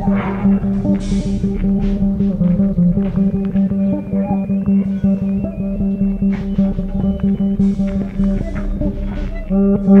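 Experimental instrumental music led by an electric bass guitar played through effects. A low note is held throughout while shorter notes move above it, with brief hissing swells of sound about a second in and again near the end.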